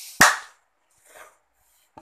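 A single sharp hand clap, loud and sudden, just after the start.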